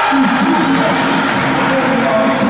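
Basketball game sound in a sports hall: music and voices from the stands, with short squeaks of sneakers on the court.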